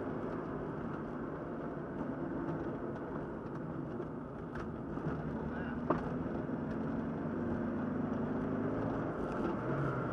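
Triumph TR7's engine running steadily, heard from inside the cabin while driving. A single sharp click comes about six seconds in.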